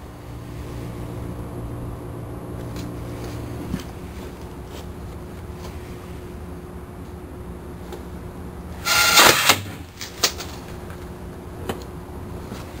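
Homemade compressed-air gun firing: a short, loud blast of released air about nine seconds in, launching the USB drive at the target at about 160 km/h. A single sharp knock follows about a second later.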